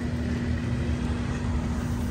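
A small motor's steady low hum over a fluctuating low rumble.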